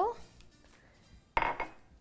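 A glass measuring cup is set down on the countertop about a second and a half in: one sharp knock with a short clatter that fades within half a second.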